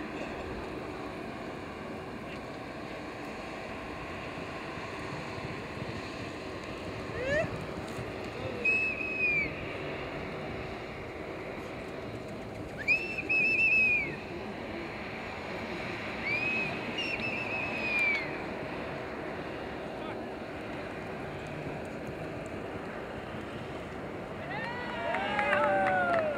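Steady open-air background of wind and distant crowd murmur, broken by three short, wavering high whistles a few seconds apart around the middle; the second whistle is the loudest.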